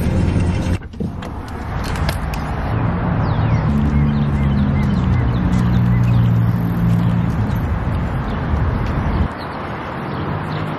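Road noise from a moving car, a steady rushing rumble with a low hum, which cuts off abruptly near the end.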